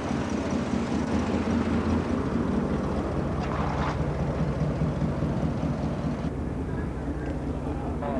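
Car running steadily along the road, heard from inside an open convertible, with engine hum, road noise and wind on the microphone.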